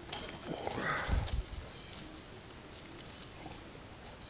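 Two big dogs romping together in grass: a brief growl or huff and a few heavy thuds of paws about a second in. A steady high insect drone with short chirps runs under it.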